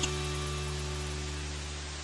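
Intro sound effect for a TV-static logo card: a steady electronic hum with a hiss of static, slowly fading after a short glitch burst at the start.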